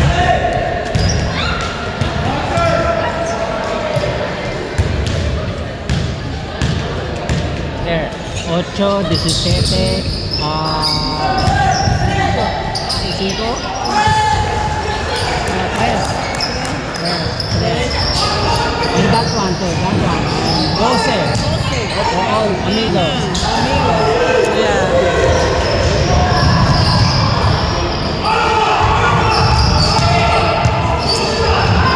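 Basketball bouncing and dribbling on a hardwood gym floor during play, with indistinct shouts from players and onlookers, echoing in a large gymnasium.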